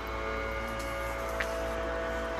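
Steady musical drone of several held tones that do not change, with a faint tick about one and a half seconds in.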